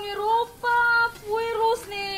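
A girl's high voice in several drawn-out, steady notes that step between a few pitches, sung or wailed rather than spoken.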